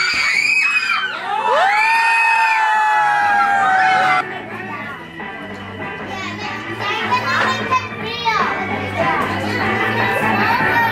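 Children squealing and shouting excitedly over background music for about four seconds. The shouting then stops suddenly, leaving quieter music with scattered voices.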